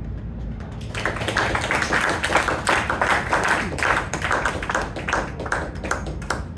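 Small club audience applauding, the clapping swelling in about a second in, over a low steady hum.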